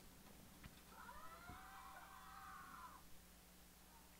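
Near silence, broken by one faint, drawn-out animal call of about two seconds. It starts about a second in, rising and then falling in pitch.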